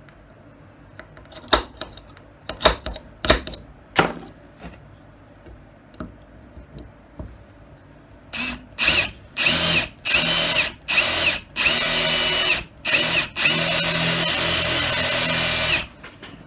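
A few sharp handling knocks, then from about eight seconds in a cordless drill spins up in a string of short bursts, each starting with a rising whine, before running steadily for about two and a half seconds near the end. It is drilling out bent brass pins from a knife's resin handle.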